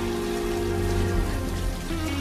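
Steady rainfall under the instrumental of a rock ballad, with long held notes over a steady bass.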